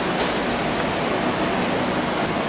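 Steady, even rushing hiss of classroom background noise, unbroken and with no voices.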